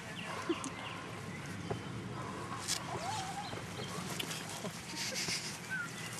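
Faint outdoor background of distant voices, with a few knocks and rustles from the camera being handled.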